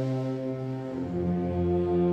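Wind band with brass playing a slow Spanish processional march in held chords; about a second in the chord changes and deeper brass joins underneath.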